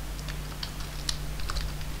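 Computer keyboard being typed on: a quick run of irregular key clicks over a low steady hum.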